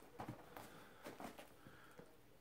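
Near silence: room tone with a few faint taps and rustles from handling a cardboard parcel, about a quarter second in.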